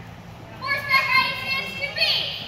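A child's high-pitched voice calling out, starting a little over half a second in and held for about a second, among other children's voices.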